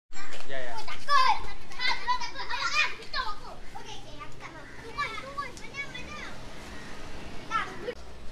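Children's high-pitched voices chattering and calling out, loudest in the first three seconds and then quieter.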